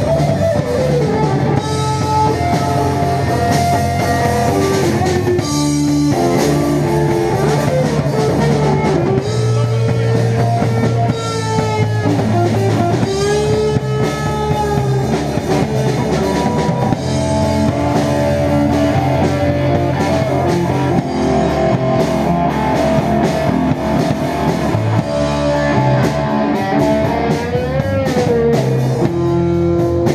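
Live rock band: electric guitar playing a lead line with bending, sustained notes over a drum kit.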